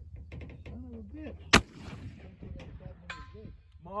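A single shot from a .54-calibre 1863 Sharps breech-loading carbine firing a black-powder load, about a second and a half in, with a short rumbling tail after the crack.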